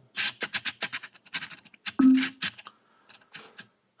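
A rapid, irregular run of sharp clicks and scratches from a hand handling the top of an Amazon Echo smart speaker, thinning out after about two and a half seconds, with a brief low tone about two seconds in.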